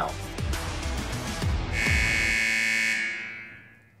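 Electronic transition sting from a TV news show: low swooping hits for the first couple of seconds, then a held bright synth note that fades out over the last second.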